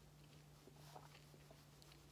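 Near silence: room tone with a faint steady low hum and a few very faint small ticks.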